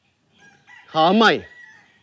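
A man's voice speaking one short phrase about a second in, its pitch rising and then dropping sharply. A faint thin high tone sits behind it.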